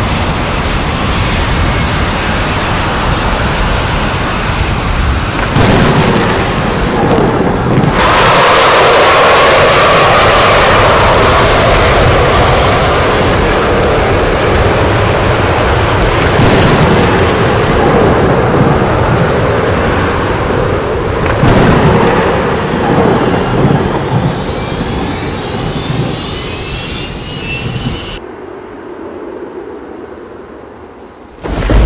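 Loud, continuous storm-like noise, rumbling and hissing, with several swells, played as the sounds of Jupiter's stormy atmosphere. Faint rising whistles come in near the end, and the sound drops away in the last two seconds.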